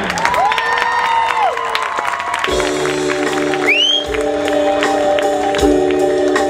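Stadium crowd cheering with a long whoop. About two and a half seconds in, a marching band comes in with a held, sustained chord punctuated by deep drum hits, and a short high whistle sounds over it.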